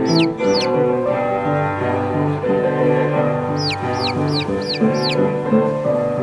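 Orchestral film score with sustained strings, over which sandpipers give short, sharply falling peeps: a couple at the very start and a run of five about four seconds in.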